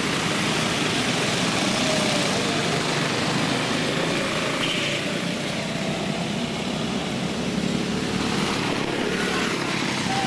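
Several go-kart engines running on a dirt oval, a steady buzzing drone whose pitch wavers slightly as the karts circulate.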